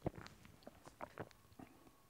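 Faint mouth sounds and small clicks from tasting a sip of cappuccino: a string of short lip and tongue smacks, the loudest right at the start.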